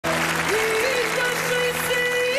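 Studio audience applauding over a band's music, with a held melody line coming in about half a second in.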